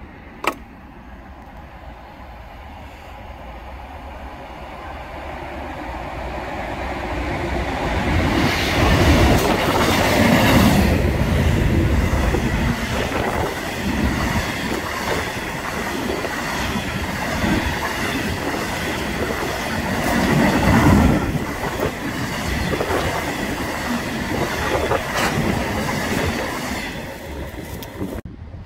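Freight train of bogie hopper wagons passing through at speed: it swells in from a distance, is loudest as the front goes by about nine to eleven seconds in, then the wagons rumble and clatter past on the rails before it fades near the end.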